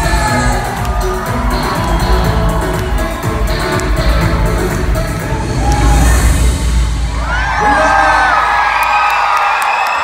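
Live pop band with acoustic and electric guitars playing the last bars of a song. About seven seconds in, the band drops out and the audience cheers and screams.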